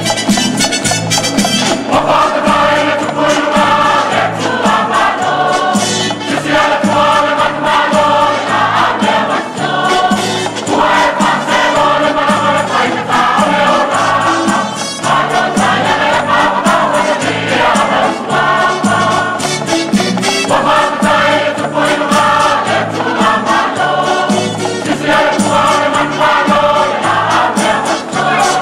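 A choir singing a gospel hymn over a band with a stepping bass line and steady percussion, the voices coming in phrases of a few seconds with short breaks between.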